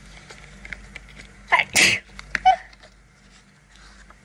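A person sneezes once about a second and a half in: a quick intake followed by a sharp, noisy burst. A couple of faint, short sounds follow it, against scattered light ticks and taps.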